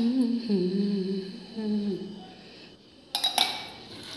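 A woman humming a devotional tune in long held notes, fading out about two seconds in. A brief crinkling rustle follows near the end.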